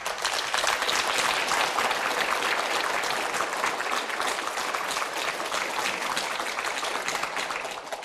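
Studio audience applauding: dense, steady clapping that fades away near the end.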